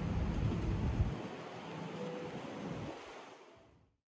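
City street ambience: a steady rush of outdoor noise with a low rumble that drops away about a second in, then fading out to silence near the end.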